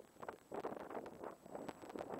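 Wind buffeting the camera's microphone in uneven gusts, with a faint steady high-pitched tone underneath.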